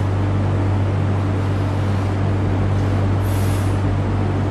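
A steady low hum with a constant hiss of background noise, and one short, soft high hiss about three seconds in.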